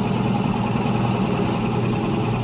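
Drill press motor running with a steady hum while a large spade bit is fed slowly down into a wooden block, boring a hole.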